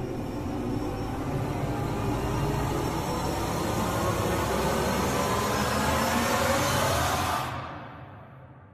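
Dark, eerie ambient drone with a rumbling undertone, swelling slightly, then falling away quickly near the end.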